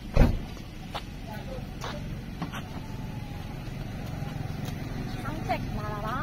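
A single loud thump just after the start, then a steady low vehicle engine rumble with a few faint clicks. A woman's voice comes in near the end.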